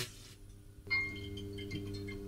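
Intro sting for an animated title card: a steady low hum, then about a second in a bright, bell-like chiming tone comes in over it and holds.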